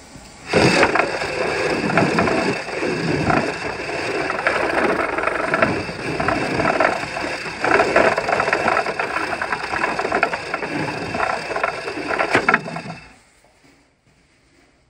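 A toilet flushing: a loud, uneven rush of water that starts about half a second in and dies away after about twelve seconds.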